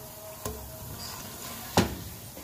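Black plastic slotted spoon stirring potato cubes frying in oil and spices in a pot, knocking against the pot twice, the second knock louder near the end, over a faint steady sizzle.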